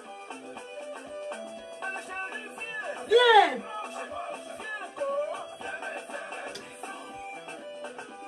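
Music with a busy run of short notes, and one loud voice swooping in pitch about three seconds in.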